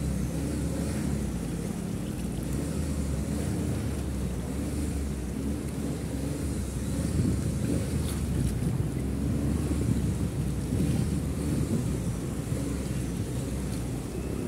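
Floodwater running across a street in a steady rushing wash, with wind buffeting the microphone.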